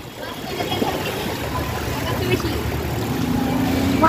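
Bicycle riding through shallow floodwater: the wheels churn and splash the water in a steady wash that grows gradually louder.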